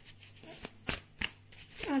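A deck of tarot cards handled and shuffled in the hands, with a few sharp, separate card clicks.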